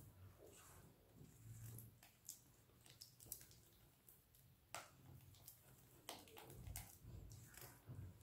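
Near silence, with faint scattered clicks and soft scraping as a silicone spatula stirs a thick custard mixture in a stainless steel pan.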